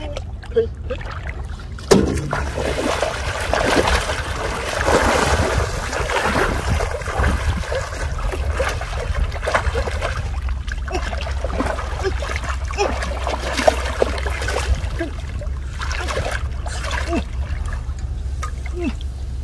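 Shallow muddy floodwater splashing, sloshing and dripping as a person wades through it and works his hands in it to haul up a hooked fish. A sharp knock stands out about two seconds in, over a steady low rumble.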